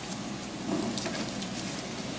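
Faint rustling and crinkling of the plastic-wrapped sticker packs as they are handled, with a few light clicks.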